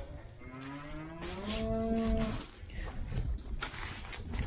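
A black Angus bovine mooing once: one long call that rises in pitch and then holds steady for over a second. A few short knocks follow near the end.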